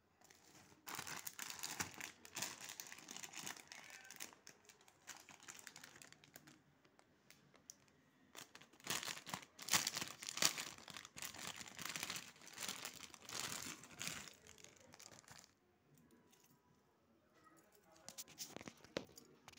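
Packaging crinkling as it is handled and opened by hand, in two long spells of crackling with a short lull between them, then quieter for the last couple of seconds.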